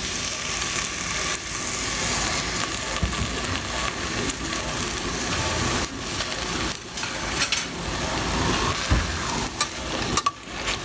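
Sliced onions sizzling in hot oil in a stainless steel pot, a steady frying hiss. A few clicks and knocks come in the last three seconds, as a spatula starts to stir the onions.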